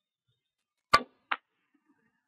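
A cue tip strikes the white cue ball with a sharp click about a second in, and a lighter click follows about half a second later as the cue ball hits the yellow object ball on a carom billiards table.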